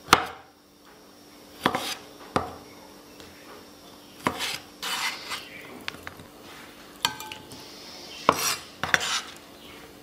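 Kitchen knife cutting pickled bamboo shoots on a wooden cutting board: a handful of separate sharp knocks, a second or more apart. Between them come scraping sounds as the cut pieces are gathered up on the blade.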